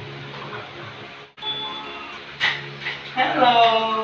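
A sharp click about halfway through, then a high voice calling out with a falling pitch near the end, over a steady low hum.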